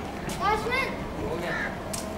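Children's voices calling and shouting, with a few short, rising, high-pitched calls in the first second and a fainter one later, over a steady outdoor background; a brief click near the end.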